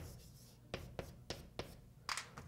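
Chalk writing on a blackboard: a sharp tap as the chalk meets the board, then four short, quick strokes in the second half.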